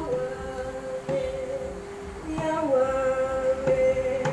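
Women's voices singing long, held notes, two pitches sounding together in the first half.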